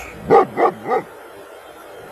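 A dog barking three times in quick succession, the barks about a third of a second apart.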